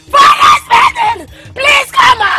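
A woman screaming: a run of loud, high cries, each under half a second, about four or five in quick succession.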